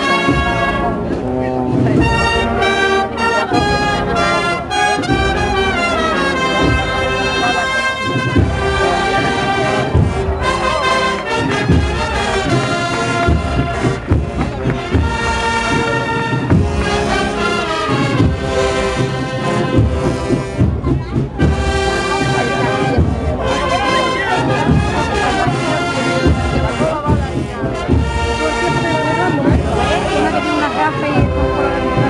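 A Spanish Holy Week agrupación musical, a band of trumpets, cornets and trombones with drums, playing a processional march with steady drum strikes under the brass melody.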